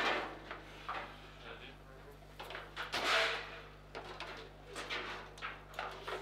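Table football (foosball) table knocking: a handful of separate sharp clacks from the rods and ball, the loudest about three seconds in.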